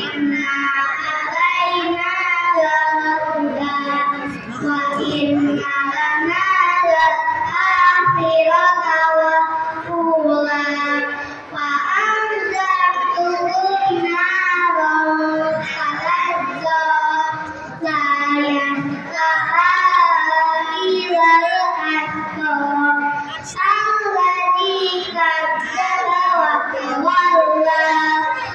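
A group of young children singing a song together, in phrases with short breaks between them.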